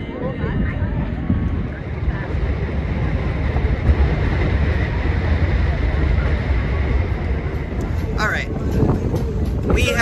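Wind buffeting the microphone aboard a catamaran under way, a steady low rumbling rush.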